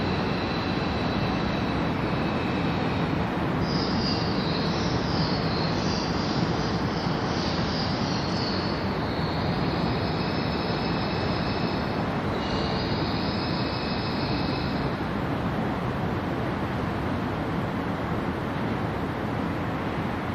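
Amtrak Capitol Corridor passenger train approaching with a steady rumble. Its wheels squeal in high, wavering tones from about four seconds in until about fifteen seconds in.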